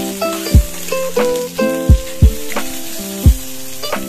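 Eggplant slices sizzling as they fry in oil in a pan while a spatula turns them, under background music of plucked-string notes with a kick-drum beat that hits four times.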